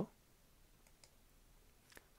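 Near silence with a few faint clicks of a computer mouse: a couple about a second in and one near the end.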